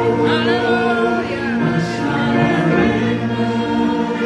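Gospel worship song: singing over steadily held chords, with a voice gliding through an ornamented run early on.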